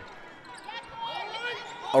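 Basketball game sound in a gym: a ball bouncing on the hardwood court over a low murmur of crowd and faint, distant voices.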